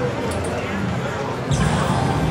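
A Double Diamond Respin slot machine spinning its reels, with the machine's electronic spin sounds and a few sharp clicks. About one and a half seconds in, a louder sound starts suddenly as the outer reels stop and the middle reel spins on.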